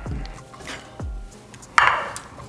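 A metal box grater set down on a plate on a wooden cutting board: a few light knocks, then a short clatter near the end. Background music plays throughout.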